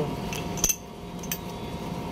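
A sharp metallic clink about two-thirds of a second in and a fainter one later, from the steel parts of a pneumatic jet chisel (the piston and cylinder) being handled during reassembly.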